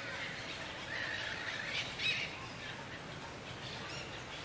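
Faint background hiss with a few faint, short, high animal calls between about one and two seconds in.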